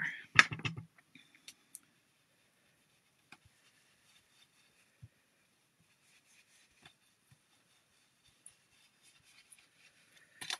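Small plastic-handled ink blending brushes knocked and set down on a glass craft mat: a brief clatter of clicks about half a second in. After that, faint scattered taps and soft scuffs as a blending brush is worked over a cardstock panel.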